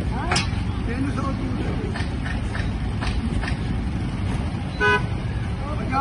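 Street traffic rumble, with one short vehicle horn toot about five seconds in.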